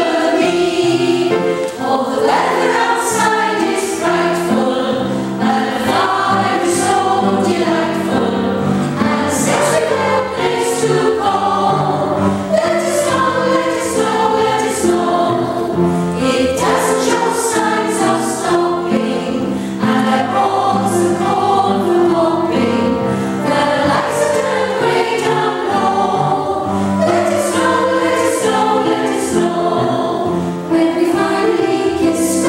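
Women's choir singing with upright piano accompaniment, held notes moving steadily through the phrase without a break.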